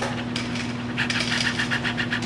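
Light metallic clicks from a Heritage Rough Rider .22 single-action revolver's action being worked while unloaded: a couple of clicks, then a quick run of about nine a second from about a second in. The gun's cylinder hand has been broken off, so the action cannot turn the cylinder.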